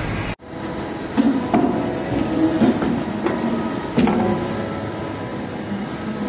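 Stainless steel sink body being knocked and handled while it is reshaped after corner welding: about half a dozen sharp metallic knocks at irregular intervals, each with a brief ring, over a steady workshop hum.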